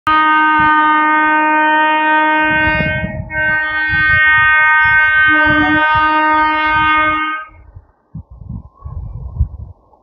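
Indian Railways electric locomotive horn sounding two long, loud blasts as the train approaches, with a short break about three seconds in. The horn stops about seven seconds in, and faint, uneven low rumbling follows.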